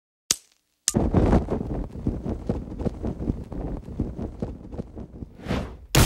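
Crackling sound effect opening a pop song: two sharp clicks, then a steady irregular crackle over a low rumble, with a whoosh swelling just before the music comes in at the end.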